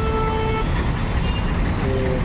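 Busy road traffic with vehicle engines running as a low, steady rumble. A vehicle horn holds one steady note and stops about half a second in.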